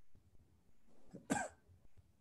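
A single short cough about a second in, over faint room tone heard through a video call's microphone.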